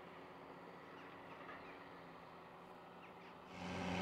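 Faint, steady distant tractor engine drone with a few faint bird calls. About three and a half seconds in it gives way to the louder, steady drone of a Challenger MT765B crawler tractor pulling a plough.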